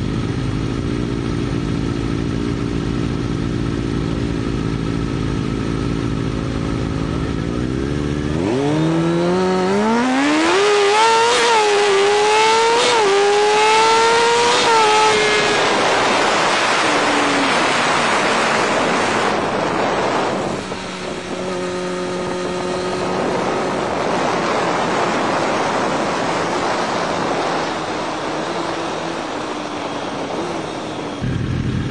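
Turbocharged Kawasaki ZX-6R 636 inline-four running steadily at low revs, then launching about eight seconds in. It accelerates hard, its pitch climbing in steps through several gear changes, then gives way to a loud rushing noise as it pulls away.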